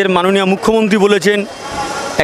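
A man talking for about a second and a half, then a short pause filled with street traffic noise.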